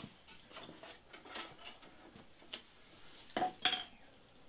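Faint scattered clicks and light knocks of a person moving about and handling things, with two short, louder sounds near the end.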